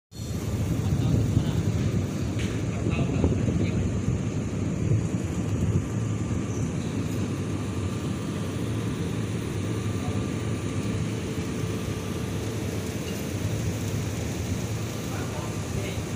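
Steady low background rumble, louder for about the first six seconds, then even, with a few faint clicks.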